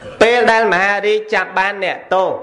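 Speech only: a man's voice, a Buddhist monk preaching a Dharma talk in Khmer.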